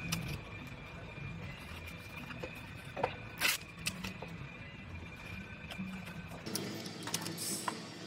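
Steady workshop background hum with a faint high tone, broken by a few short, sharp handling noises about three seconds in, the loudest about half a second later. A brief hiss comes near the end.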